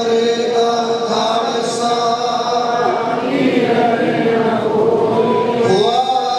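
Sikh devotional chant led by a man's voice over a microphone, sung in long, steady held notes with other voices joining in.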